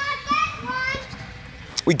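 Young children's high-pitched voices calling out as they play, loudest in the first second, then fading.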